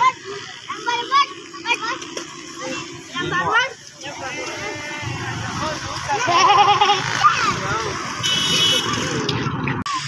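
Mostly children's voices talking, with chatter over steady outdoor background noise in the second half.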